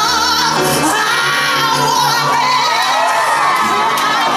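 A woman belting a high, held note with wide vibrato over piano accompaniment, with some audience cheering.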